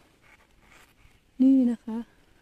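Faint scratchy rustling, as cucumber leaves brush against the phone, then a woman's short spoken phrase in Thai about a second and a half in.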